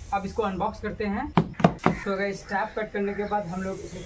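A man talking, with two sharp knocks about a second and a half in, from hands striking the cardboard bicycle box.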